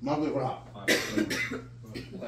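A person coughing twice in quick succession, about a second in, amid party voices.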